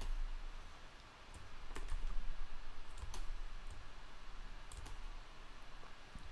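Scattered single clicks of a computer mouse and keyboard, a few seconds apart, over a low steady hum.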